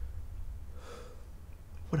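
One audible breath, soft and airy, about a second in, over a steady low hum. A spoken word begins right at the end.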